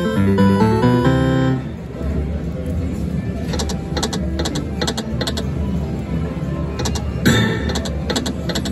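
Slot machine win jingle, a run of stepped electronic notes that ends about one and a half seconds in. Then a steady din while the reels spin, with a string of short, bright, chime-like clicks, and a brief burst of tones near the end as the reels come to a stop.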